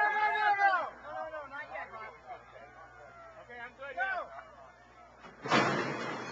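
Thoroughbred starting gate springing open with a sudden loud clattering bang about five and a half seconds in, after a few seconds of faint voices and murmur while the horses wait in the gate.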